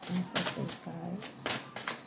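Tarot cards being handled on a wooden table: about five sharp clicks and snaps, one a little after the start and a quick cluster near the end, with a low voice murmuring between them.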